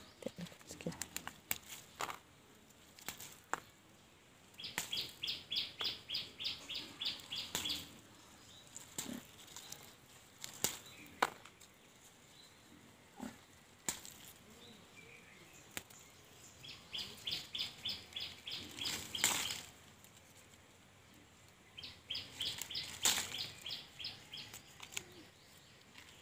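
A bird calling in three runs of about ten quick, evenly repeated high chirps. Between the runs there are short clicks and rustles of chilli-plant leaves and stems as the ripe pods are picked by hand.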